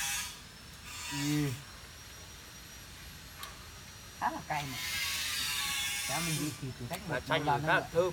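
A high rasping buzz that swells and fades twice, broken by a few short spoken words.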